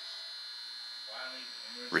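Faint, steady high-pitched electrical whine over a light hiss, with a brief faint voice in the background a little past the middle.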